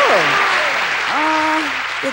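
Studio audience applauding steadily, with voices calling out over the clapping.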